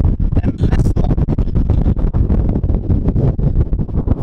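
Wind buffeting the camera's microphone: a loud, unsteady rumble that rises and falls.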